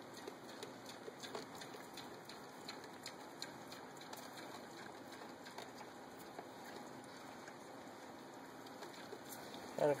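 Baby mini pigs sniffing at an offered hand: faint snuffling and rustling of straw bedding, with scattered small clicks over a low steady hiss.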